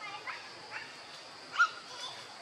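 Short high-pitched monkey squeaks, four in quick succession, the last and loudest about a second and a half in.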